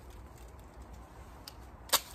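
A round sheet of ice breaking with one sharp snap near the end, after a faint click a moment before.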